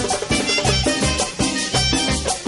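Live tropical Latin dance band playing an instrumental passage, a clarinet lead over bass and percussion with a steady dance beat.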